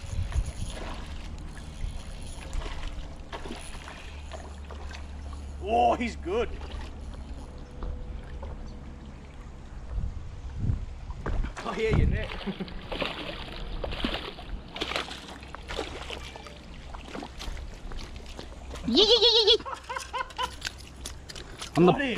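A hooked redfin perch splashing at the surface while it is reeled in on a spinning reel, with a burst of splashing about halfway through.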